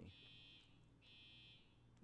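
Near silence: room tone with a faint high-pitched buzz that pulses on and off about once a second.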